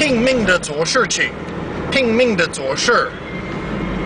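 A voice speaking, with tonal rises and falls typical of Mandarin, inside a moving car's cabin with steady road and engine noise underneath.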